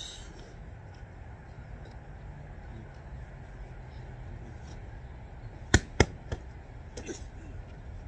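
Boxing gloves punching focus mitts: two sharp smacks about a quarter second apart, then a lighter third hit, over a steady low rumble.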